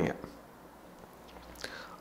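A pause in a man's talk: his last word trails off at the start, then low room tone, with a faint breath and a short mouth click just before he starts speaking again.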